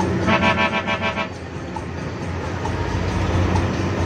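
A vehicle horn sounds one blast lasting about a second, heard from inside a moving bus over the steady hum of the bus's engine.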